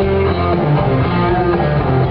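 Live country band playing loud and steady: strummed acoustic guitar and electric guitar over bass guitar.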